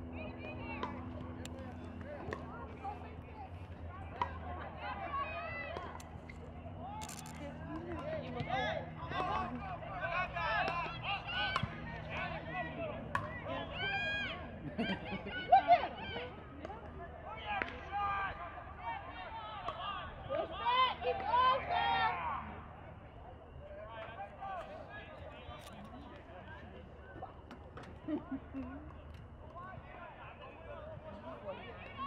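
Indistinct shouts and calls from players and people on the sideline of a soccer game, busiest in the middle and quieter near the end, over a steady low hum.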